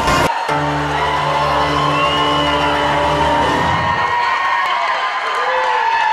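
A live band holds a chord with the audience cheering and whooping. The chord stops a little under four seconds in, and the crowd cheering carries on after it.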